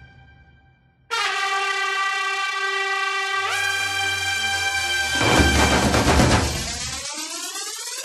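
Trailer music sound design. After a moment of silence, a sustained brassy horn-like chord cuts in about a second in, swells past the middle, and turns into a rising sweep near the end.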